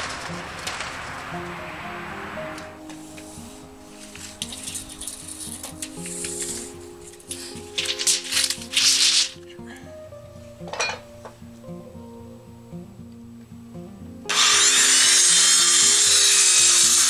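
Background music plays, with a few short rustling or scraping noises midway. About 14 seconds in, a corded circular saw starts and runs loudly and steadily, cutting off the excess end of a treated two-by-six footing board.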